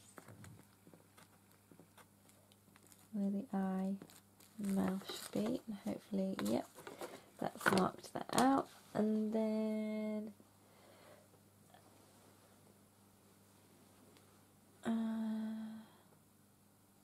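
A woman humming to herself in short phrases, several ending on long held notes, the last near the end. Faint crinkling and ticks of paper being handled come between the phrases.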